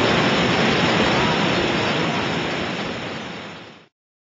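Trümmelbach Falls, meltwater pouring through a rock gorge: a loud, steady rush of falling water and spray that fades out over the last second and a half and cuts off just before the end.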